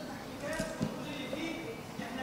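Indistinct speech without clear words, with one sharp knock about halfway through.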